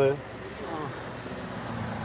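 A vehicle engine idling steadily: a low, even hum under the tail of a spoken question and some faint voices.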